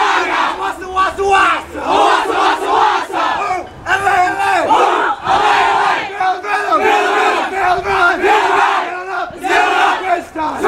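A group of teenagers shouting together, many voices overlapping without a break, as a team huddle cheer.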